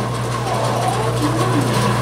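A steady low mechanical hum, with faint voices underneath.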